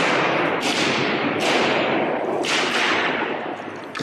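Hammers repeatedly smashing the protective glass over a painting: about four heavy blows, each followed by a crashing decay that fades over most of a second.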